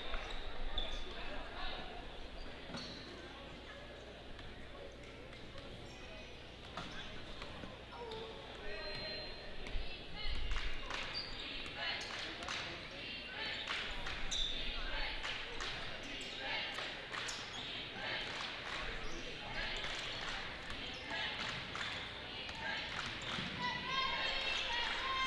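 Basketball dribbled repeatedly on a hardwood court, the bounces echoing in a large gym over a steady murmur of crowd and player voices, with a few short high squeaks of sneakers on the floor.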